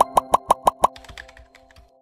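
Six quick pop sound effects, about six a second, then softer ticks that fade out. They play over the held, ringing tail of a chime jingle from a TV channel's animated end card.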